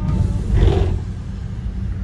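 Low road and engine rumble inside a moving taxi van, with a short rushing burst about half a second in.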